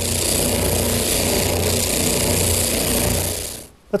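Spindle sander running steadily, a low hum under a broad hiss, as the rounded end of a wooden leg is sanded against the drum; it stops shortly before the end.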